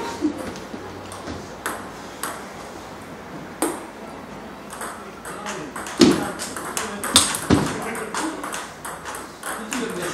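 Table tennis rally: a celluloid/plastic ping-pong ball clicking sharply off rubber paddles and bouncing on the table, in irregular single hits with a quicker run of hits about six seconds in.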